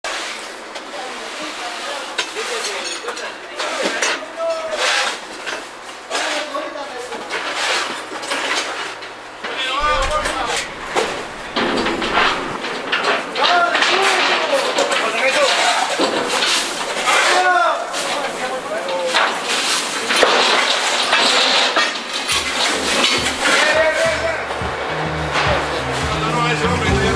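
Indistinct voices mixed with background music, with a stepped bass line coming in near the end.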